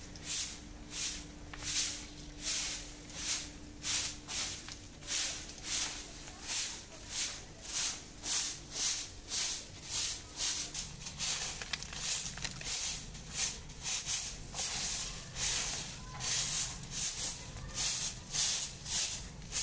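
Soft grass broom sweeping dry leaves and dust across a concrete courtyard floor, in regular swishing strokes about one and a half to two a second.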